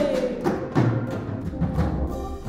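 Live worship band playing a song between sung lines: acoustic guitar, bass, keyboard and drums, with a few drum strikes. A sung note slides down and fades out at the start.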